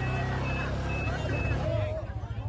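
A quad bike's (ATV's) engine running close up, with several men's voices shouting over it. A short high beep sounds four times, about twice a second.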